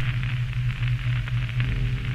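A steady low electrical hum under a hiss of static with faint crackle, in the style of a lo-fi or glitch outro effect. A few faint held tones come in near the end.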